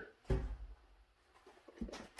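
A single short knock, then quiet, with a faint low thump near the end: parts being handled on a shop bench while a spare piston is fetched.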